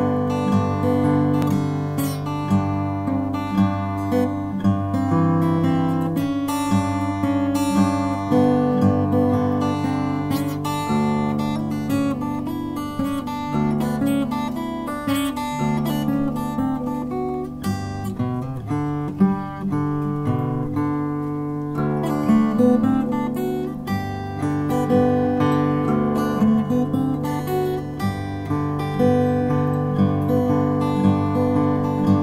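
Background music played on acoustic guitar, a steady tune.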